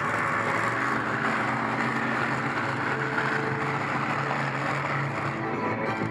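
Monster truck engine running steadily under a wash of crowd noise; the engine hum drops away about five and a half seconds in.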